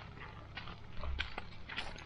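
A small dog's paws crunching on a fine-gravel path in an irregular trot, picked up close by a camera mounted on the dog, with a few low thumps of camera jostle.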